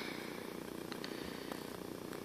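Quiet steady background noise with a few faint light ticks about a second in, from a fingertip tapping the glass touchscreen of a Samsung Gear Live smartwatch.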